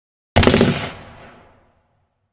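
Edited-in sound effect: a short burst of rapid gunfire, starting sharply about a third of a second in and dying away with a reverberant tail over about a second.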